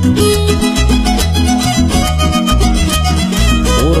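Huasteco string trio playing huapango: a violin carries the melody over strummed rhythm strings and a steady pulsing bass.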